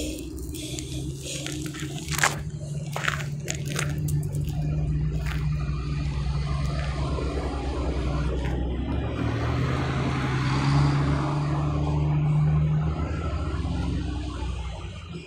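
A motor vehicle engine running with a steady low drone that swells louder about three-quarters of the way through, with a few sharp clicks in the first few seconds.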